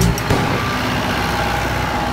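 Engine of a rotary tiller running steadily, an even mechanical drone with faint constant tones, after a short snatch of music at the very start.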